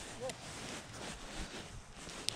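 Faint, even outdoor background noise with a short, faint rising tone about a quarter second in.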